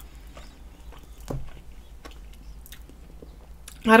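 Faint, close-miked chewing of a chicken wing, with scattered small mouth clicks and one slightly louder blip about a second in.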